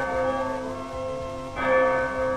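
Church bell ringing, with long sustained tones and a fresh strike about one and a half seconds in.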